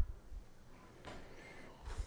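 Quiet room tone with faint, short low thumps, one at the very start and another near the end.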